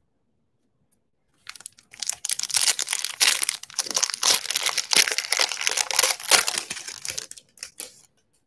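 Foil wrapper of a Donruss football trading-card pack being torn open and crinkled by hand: a dense crackling that starts about a second and a half in and dies away near the end.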